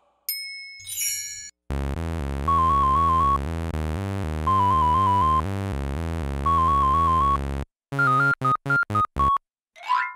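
Electronic 8-bit video-game music: a brief ding and chime sparkle, then a bouncy tune over a steady pulsing bass with a trilled melody note repeated three times. It ends in a quick run of short beeps that stops suddenly.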